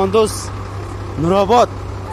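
A heavy truck's diesel engine idling with a steady low rumble, under short bursts of people's voices, loudest about a second and a half in.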